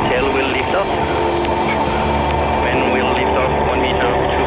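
Solar Impulse 2's four electric motor-driven propellers humming steadily on several held pitches as the plane flies low past, with faint voices in the background.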